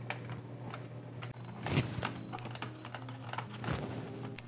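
Small sharp clicks and taps of fingers threading small hexagon lock nuts onto the metal backplate screws of a CPU cooler mount, with a louder scuff about halfway through and another near the end.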